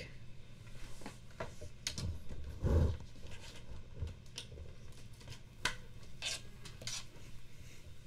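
Scattered light clicks, knocks and rubbing from gear and objects being handled at a desk, with one louder, duller thump about three seconds in.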